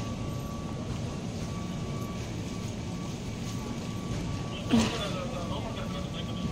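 Steady low rumble of an airport baggage hall, with a faint steady hum running under it. A person's voice is heard briefly near the end.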